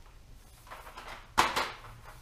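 Cardboard box of colored pencils being handled: a short rustle of cardboard, then one sudden loud scrape-knock about one and a half seconds in.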